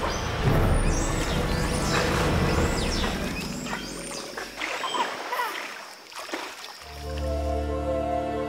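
Giant otters calling with many short, high squeals that rise and fall and overlap, dying away about five seconds in. Music with long held notes comes in near the end.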